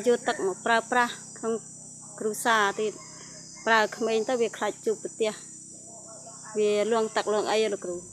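A woman speaking in an interview, over a steady high-pitched chorus of insects.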